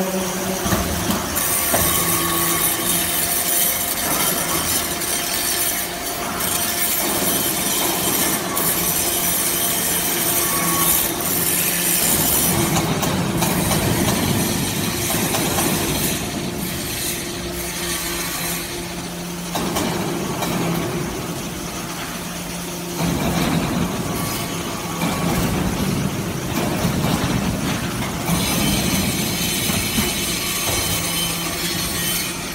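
Hydraulic briquetting press for aluminium scrap chips running: a steady low hydraulic-pump hum under loud, continuous mechanical noise that changes character several times as the machine works.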